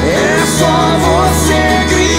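Live acoustic pop-rock band music: acoustic guitars and drums with a sung melody over them.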